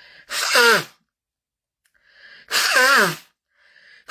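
A woman sneezing twice into a cloth held over her nose, about half a second in and again about three seconds in. Each sneeze has a short intake of breath before it and a voiced cry that falls in pitch.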